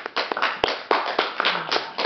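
A small audience clapping: a short patter of many quick, irregular hand claps.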